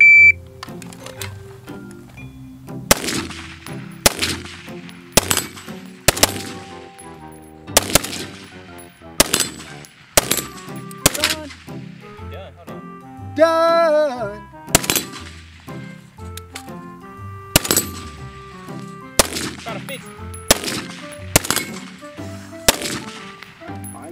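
A short high beep, then AR-style rifles firing single shots at an uneven pace, about fifteen in all, sometimes two or three in quick succession.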